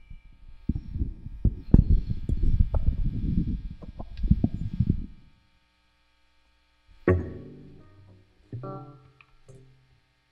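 Close microphone handling noise, a run of knocks, bumps and rubbing as the mic is set up in front of a guitar amp, stopping about five seconds in. After a short pause, an electric guitar's strings ring out through the amp: a chord about seven seconds in that rings and fades, then a couple of single notes.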